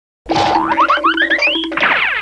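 Cartoon sound-effect jingle: a run of quick upward pitch swoops, each starting a little higher than the last, over a steady musical backing, ending in a falling swoop.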